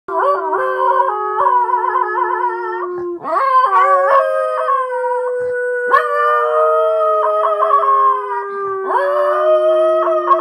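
Miniature pinscher howling with excitement in long, drawn-out howls, each held for a few seconds. The first howl wavers in pitch, and the later ones slide slowly downward, with short breaks for breath between them.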